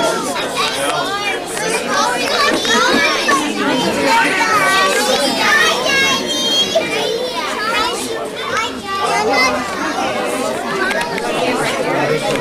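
A group of young children talking and calling out at once, their high voices overlapping without a break, with one brief high-pitched squeal about halfway through.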